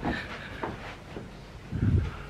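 Quiet rustling and handling noise from a handheld camera carried while walking, with a short low burst of sound near the end.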